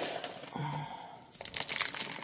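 Dry moss being pulled apart and tucked in around a potted orchid's roots: a crinkly rustle with many small crackles.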